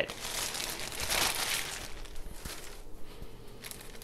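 Large plastic chip bag crinkling as it is handled and moved, loudest about a second in and dying away in the second half.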